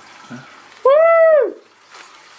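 A person's loud, high-pitched 'woo!' whoop, its pitch rising and then falling over about half a second, about a second in; a quiet 'yeah' comes just before it.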